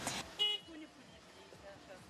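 A short, faint car-horn toot about half a second in, then quiet background.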